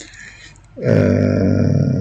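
A man's voice holding a hesitation sound, a steady "ehhh" at one pitch, starting a little before halfway and lasting just over a second, after a short quiet breath.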